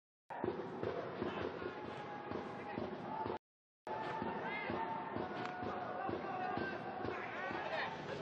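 Football match sound from a small stadium: players' and spectators' shouts and chatter with scattered thuds of the ball being kicked. The sound cuts out completely for a moment about three and a half seconds in.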